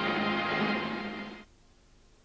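A jazz big band of saxophones, brass and rhythm section holds a full chord that cuts off sharply about one and a half seconds in, the release of the closing chord of a number.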